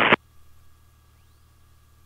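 An aviation radio transmission cuts off abruptly just after the start, leaving only the faint steady electrical hum and hiss of the aircraft's radio/intercom audio feed.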